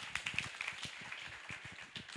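Audience applauding: many hands clapping irregularly at the end of a talk.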